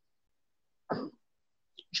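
A man's single short cough about a second in, between stretches of near silence on a video-call line.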